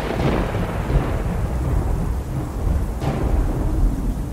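Thunderstorm sound effect: a continuous deep rumble of thunder with a rushing, rain-like hiss that swells near the start and again about three seconds in.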